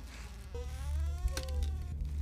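A young woman's drawn-out, muffled whimper through a clear-tape gag over her mouth, starting about half a second in, wavering in pitch, with a brief click in the middle. A steady low rumble runs underneath.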